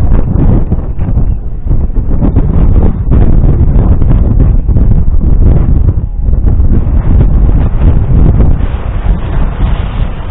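Strong wind buffeting the microphone: a loud, low rumbling roar that surges and eases in gusts, with short lulls.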